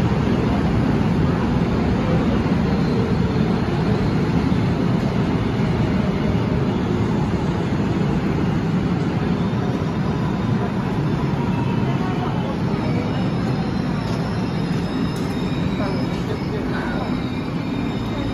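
Korail 311000-series electric commuter train running into a station platform and slowing, a dense steady rumble of wheels and running gear that eases gradually. Faint high wheel and brake squeals start in the second half as it brakes.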